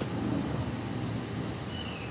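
Steady low outdoor rumble, with a short high falling chirp near the end.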